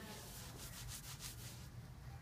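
Quick rubbing strokes across a surface, about six a second, that stop a little before the end.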